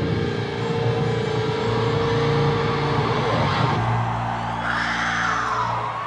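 Live heavy metal band at high volume, distorted electric guitars and bass holding sustained notes. In the second half a higher tone glides down in pitch over the low drone.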